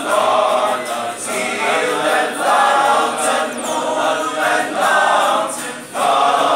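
A male choir of young men singing a Christmas carol together, unaccompanied, in sustained phrases with short breaks between them.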